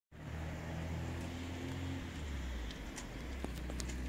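An engine running steadily with a low, even hum, with a few faint clicks in the last second or so.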